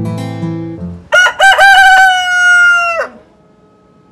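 Acoustic guitar music fades out, then a rooster crows once, loud and close: a few quick broken notes running into one long held note of about two seconds that drops in pitch as it ends.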